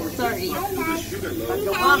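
Indistinct voices of people talking, with a faint steady hiss behind them.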